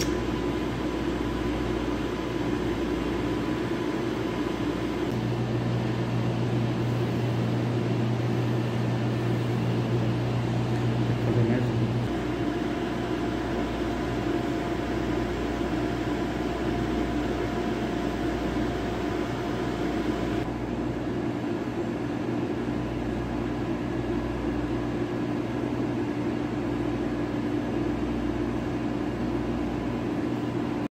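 Steady mechanical hum of refrigeration and cooling equipment, with a few steady tones in it. A deeper hum joins about five seconds in and drops out again about seven seconds later.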